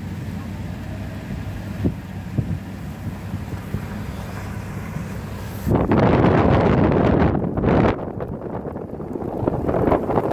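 A steady low rumble, then about six seconds in a sudden loud blast of wind on the microphone that drops back briefly near eight seconds and swells again near the end.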